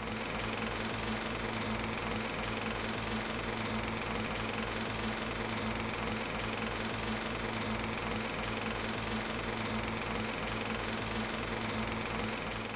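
Film projector running: a steady mechanical whirr with a low hum and a fast, even clatter.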